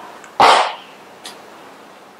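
A single short dog bark about half a second in.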